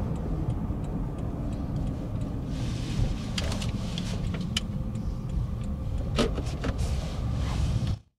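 Interior noise of a car on the move: a steady low road and engine rumble, with a few light clicks about halfway through and again near the end.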